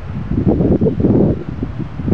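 Wind buffeting the camera microphone: an uneven low rumble that swells in gusts, strongest in the first half.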